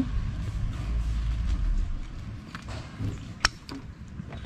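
Scooter front brake caliper parts being handled and fitted back together, with a few light clicks and one sharp click about three and a half seconds in. A low rumble runs through the first two seconds.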